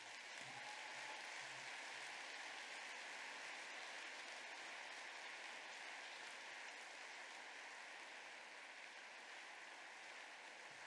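Audience applauding, a steady clapping that eases slightly near the end.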